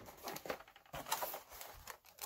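Cardboard box and plastic-windowed toy packaging being handled: a few faint rustles and light taps.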